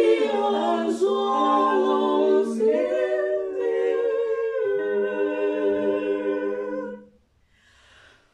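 Female barbershop quartet singing a cappella in close four-part harmony, with sustained chords. The last chord is held for a couple of seconds, and the singing stops about seven seconds in for a short pause.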